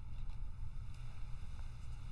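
Room tone through the microphone: a low steady rumble with a few faint ticks.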